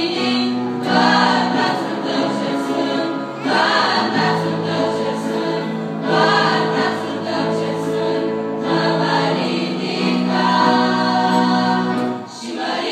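A girls' choir singing a Christian song, with long held notes in phrases that swell every few seconds.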